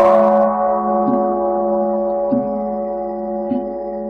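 A Buddhist bowl bell is struck once and rings on with a slow fade, a cluster of steady tones, marking the break between chanted verses. Soft, even knocks come about every 1.2 seconds under the ringing.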